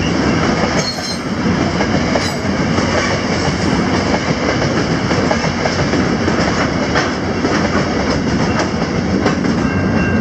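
Freight train of grain hopper wagons rolling past close by: a steady loud rumble of wheels and rail, with clickety-clack over rail joints and brief high wheel squeals about one and two seconds in.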